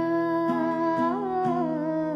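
Wordless humming of a held, slowly gliding melody over guitar notes plucked about twice a second.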